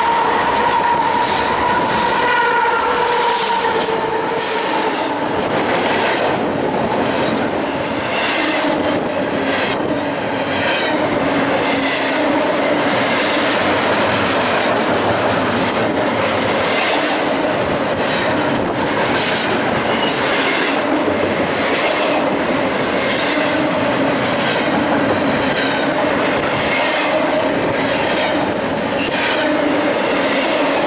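Double-stack intermodal freight train passing close by. A locomotive horn chord trails off in the first few seconds, then the container cars roll past with a steady rumble and a regular clack of wheels over the rail joints.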